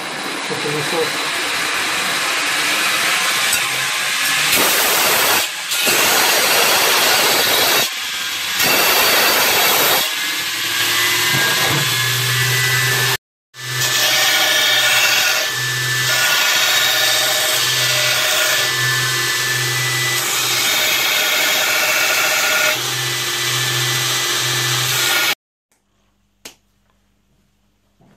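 Belt grinder running while a high-speed steel knife blank is pressed against the belt: a loud, steady grinding hiss over the motor's hum, broken by a few abrupt cuts, then stopping suddenly near the end.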